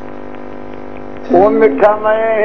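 Steady electrical mains hum with a stack of even harmonics, then about a second and a half in, a man's voice comes in singing over it.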